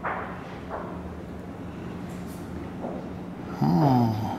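A steady low hum, and near the end a short, loud sound from a person's voice, falling in pitch.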